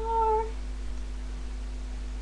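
A young woman's voice drawing out the word "Star" on a high, level pitch, ending about half a second in. After that only a steady low electrical hum remains.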